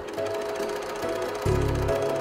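A sewing machine running with a fast, even clatter under soft background music with held notes.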